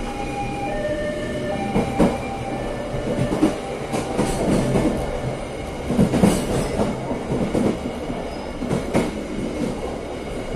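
Train running on rails with a steady rumble, its wheels knocking sharply over rail joints and points several times, strongest about two, six and nine seconds in. Thin whining tones sound in the first couple of seconds.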